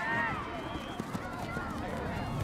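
Distant shouted calls from people on an outdoor soccer field, short and overlapping, with a few faint knocks.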